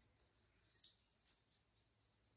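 Near silence: room tone, with a faint high steady tone and a few soft ticks.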